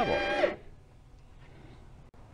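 A man's voice finishing a word, cut off abruptly about half a second in, then only faint, steady background noise.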